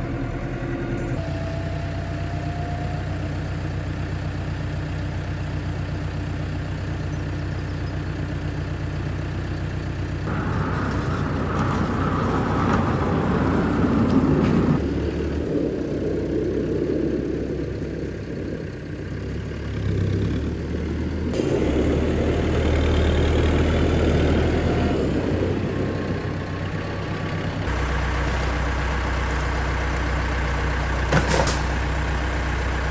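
Farm tractor's diesel engine running steadily, heard from inside the cab and then from outside, its sound changing abruptly several times where the shots change.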